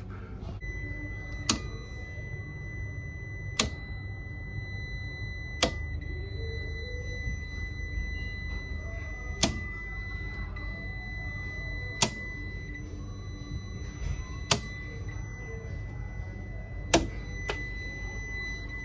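A Fieldpiece multimeter's continuity beeper sounding one steady high tone, held on by a direct short from L1 to earth. Over it come sharp clicks every two to three seconds, about seven in all, as miniature circuit breakers are flicked off one at a time. The tone keeps sounding through the clicks, so none of these breakers clears the short.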